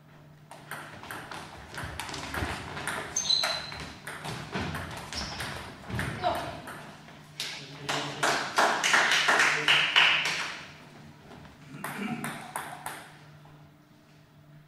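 Table tennis ball clicking sharply off bats and the table in a quick run of hits during a doubles rally. Players' voices follow once the point ends, and a few more ball clicks come near the end.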